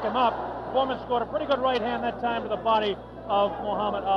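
A man speaking continuously: broadcast boxing commentary, over a steady low hum.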